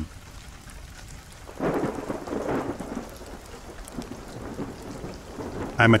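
Steady rain on a recorded rain-sound bed, with a roll of thunder swelling about a second and a half in and slowly fading.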